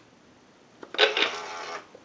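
A click as the button on the base of an animated Goofy lamp is pressed to switch it off. About a second in, the lamp's animation mechanism runs for just under a second as the figure moves.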